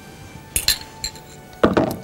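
Two or three light clinks of a bowl and spatula against a stainless steel saucepan about half a second in, as tempered egg yolks are scraped into the hot cream sauce.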